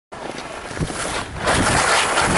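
Skis sliding over snow with wind rushing across the camera microphone, getting much louder about one and a half seconds in as the skier moves off down the slope.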